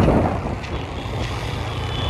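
Motorcycle under way, heard from on board: a steady low engine rumble mixed with wind and road noise on the microphone.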